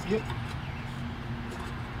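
Outdoor air-conditioner unit humming steadily, a low even drone, with a man's brief "yep" at the very start.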